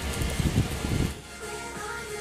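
Rain and wind noise on a wet street, with wind buffeting the microphone, for about the first half. It then cuts to soft background music with held notes.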